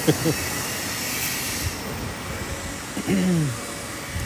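Steady city-street background noise while walking outdoors, with a short burst of voice right at the start and a brief falling vocal sound about three seconds in.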